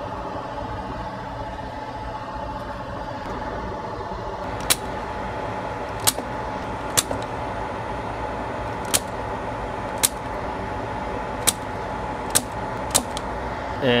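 Spring-loaded desolder pump firing against freshly soldered joints on a circuit board: a series of sharp snapping clicks at irregular intervals, about nine, starting nearly five seconds in. A steady low hum runs underneath.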